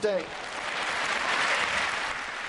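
Tennis crowd applauding a finished point, the clapping building over the first second and a half and then easing slightly.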